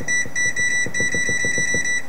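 Electronic oven control panel beeping as the timer is set: a run of short high beeps, about six a second, that merge into one long steady beep through the second half as the button is held and the minutes scroll up.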